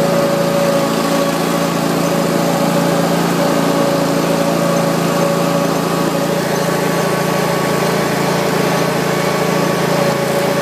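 Exmark Lazer Z zero-turn mower's engine running steadily at an even speed as the mower is driven along a road.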